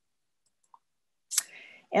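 Near silence, then a single sharp click about a second and a half in, followed by a short breath just before a woman starts speaking.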